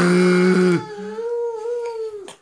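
Two long drawn-out vocal "aah" sounds: a loud, lower one that breaks off just under a second in, then a toddler's higher, quieter "aah" held for over a second with a slight waver in pitch.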